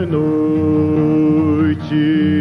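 A man singing one long held note over steadily strummed acoustic guitar; the voice breaks off briefly near the end and slides up into the next note.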